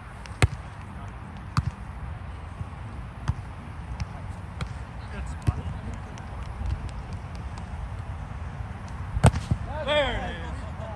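A volleyball struck by hands during a rally: a loud smack of the serve about half a second in, then several sharper, spaced-out hits of passes and sets, and another loud hit near the end followed by a short shout.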